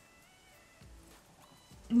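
Faint music in the background: a few thin, high notes over quiet room tone.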